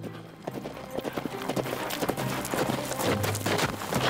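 Hoofbeats of a ridden horse, a quick, irregular run of hoof strikes starting about half a second in, with music underneath.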